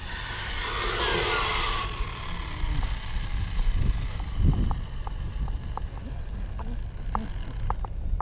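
Traxxas 4-Tec 3.0 RC car's electric drivetrain whining down in pitch as the car slows after a speed pass, fading within about two seconds. Then a low rumble with scattered light ticks.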